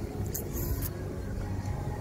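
Low, steady rumble of city street traffic, with a brief high hiss about half a second in.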